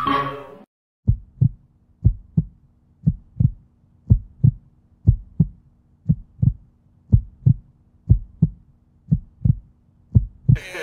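Music breaks off just under a second in, then a slow heartbeat: pairs of low lub-dub thumps about once a second over a faint steady hum.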